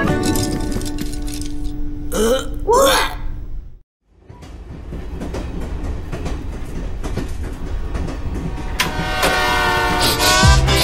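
Cartoon soundtrack: light music, then two short wordless cartoon-voice calls that glide up and down in pitch about two to three seconds in, a brief silence just before four seconds, and then the series' title music building up.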